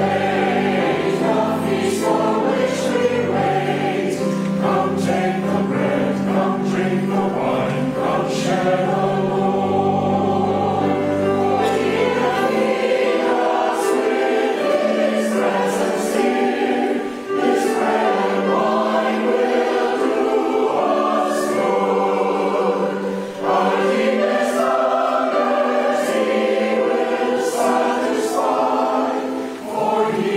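Mixed church choir singing a slow communion hymn with accompaniment. Deep sustained bass notes under the voices stop about twelve seconds in, and the singing dips briefly between phrases a few times.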